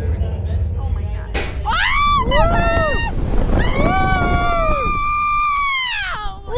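Two riders screaming as a slingshot ride catapults them skyward: a sudden burst of noise about a second and a half in, then two long screams that rise and fall, over a steady low wind rumble.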